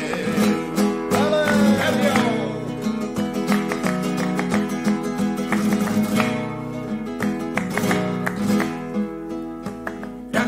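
Flamenco acoustic guitar playing an alegrías interlude between sung verses, with many quick plucked and strummed notes. The tail of a male singer's drawn-out sung line slides down and fades out about two seconds in.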